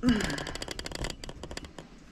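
Rapid, irregular crackly rustling and clicking, typical of a handheld camera being moved and handled close to its microphone. There is a brief vocal sound at the very start.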